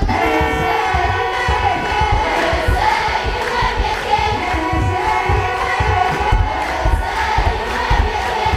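A large group of voices singing an Ethiopian Orthodox liturgical chant (mezmur) together, accompanied by deep, repeated beats of a kebero barrel drum.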